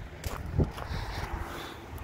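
Wind buffeting the microphone: an uneven low rumble, with a light knock about half a second in.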